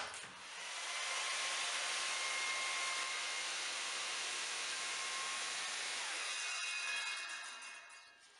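A Makita circular saw starts up and cuts along a board for about six seconds, then winds down with a falling whine near the end.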